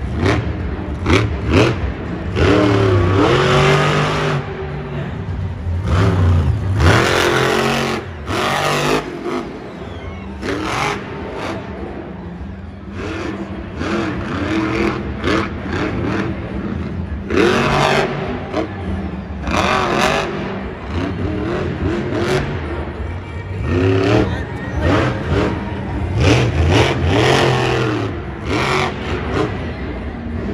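Whiplash monster truck's supercharged V8 engine revving hard in repeated bursts, its pitch rising and falling as it drives and jumps through a freestyle run.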